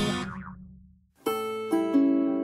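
Instrumental background music. A plucked chord rings out and fades to a brief silence about a second in, then the music starts again with held notes.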